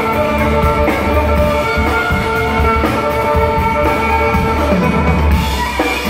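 Live folk-rock instrumental: a fiddle bowing sustained notes that change about once a second, over strummed acoustic guitar and a drum kit.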